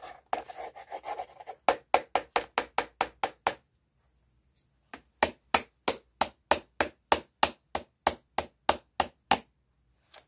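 A brief rubbing or scratching, then sharp, evenly spaced taps or clicks from a small handheld object, about five a second. The clicks come in two runs with a pause of about a second and a half between them.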